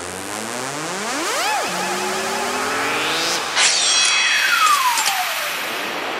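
Electronic music from a darkpsy trance track, beatless: synthesizer tones glide up and down, one rising sharply about a second and a half in, then a sharp hit a little past the middle sets off a long falling sweep.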